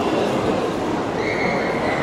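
Steady food-court din: a continuous wash of crowd and room noise, with a brief high-pitched squeal-like tone a little past halfway.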